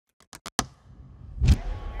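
Intro sound effect: four quick sharp clicks, then a louder low hit that swells up about a second and a half in.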